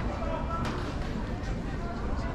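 Indistinct conversation of people at café tables and passers-by, with no single voice standing out, and one sharp click a little after half a second in.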